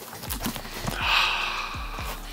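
A few dull knocks and a rustle as a Tioga Disc Drive Pro bicycle wheel with a knobbly tyre is lifted and handled against a desk. The rustle is loudest about a second in.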